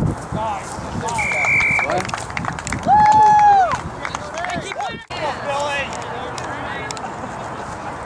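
A short, steady referee's whistle blast about a second in, after a conversion kick, then a long held shout that drops off near the end, over scattered shouting from players and spectators.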